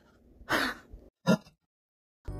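A woman's short breathy vocal sounds, like a throat clearing: a brief breath about half a second in, then a shorter throat sound about a second later.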